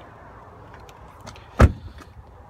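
A Volkswagen Golf SV's rear passenger door being shut: one deep thump about one and a half seconds in, after a few faint clicks.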